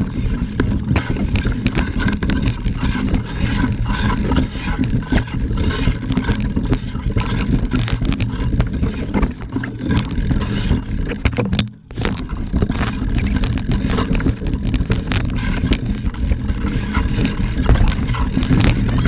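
Loud, steady low rumble with many clicks and knocks on a camera carried along a rough trail among mountain bikes: wind and handling noise on the microphone, with rattling from the bikes and trail. The sound drops out briefly about two-thirds of the way through.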